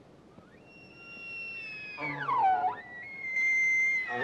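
Bull elk bugling, its rutting call. The call climbs to a high, held whistle, drops to a low grunting note about two seconds in, then rises again to a second held whistle near the end.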